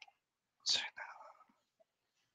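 A man whispering briefly into a headset microphone: a short hiss a little under a second in, then faint murmuring.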